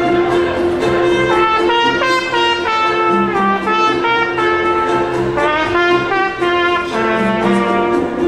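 Herald trumpet playing a lively melody, its notes stepping up and down every fraction of a second, over a steady held lower tone from the accompaniment.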